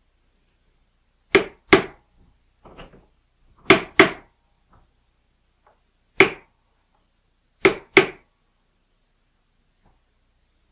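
Hammer tapping a punch to drive lead shot into an unused lube hole of a steel bullet-sizing die held in a vise: seven sharp taps, mostly in pairs about a third of a second apart, with pauses of a couple of seconds between them.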